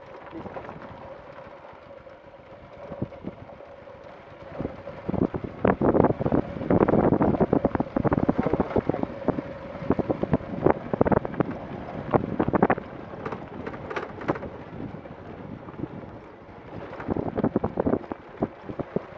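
Rough crunching and rattling of loose gravel and stones, loudest in a dense run from about five to thirteen seconds in and again briefly near the end, over wind on the microphone and a faint steady hum.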